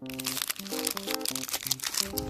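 Plastic wrapper of a Nestlé Munch wafer bar crinkling in a dense run of crackles as it is handled and pinched to tear open, over a simple background music melody.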